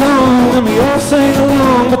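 Acoustic guitar strummed along with a man singing into the microphone, a live folk song with voice and guitar together.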